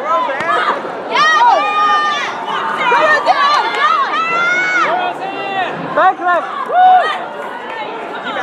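Several people shouting and yelling in high voices over the background noise of a crowd.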